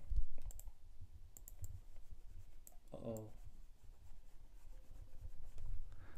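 A few scattered light clicks at a computer while the drawing pane is being cleared, the sharpest just after the start, with a short murmured voice sound about three seconds in.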